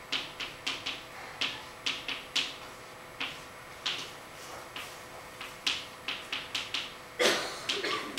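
Chalk on a blackboard as equations are written: a quick, irregular run of sharp taps and short strokes, a few a second, with one louder, longer scrape about seven seconds in.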